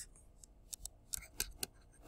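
A stylus tapping and ticking on a tablet screen during handwriting: a string of faint, short, irregular clicks, about eight in two seconds.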